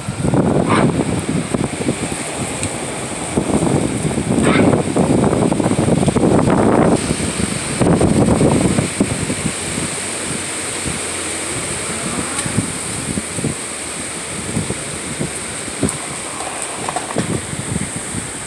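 Strong gusty storm wind buffeting the phone's microphone, coming in loud surges during the first half and settling into a steadier rush later.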